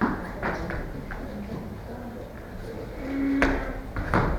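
Bare feet thumping and landing on foam floor mats as children perform jumping kicks: several short thumps in the first second or so, then a louder sharp smack about three and a half seconds in, just after a brief held vocal sound.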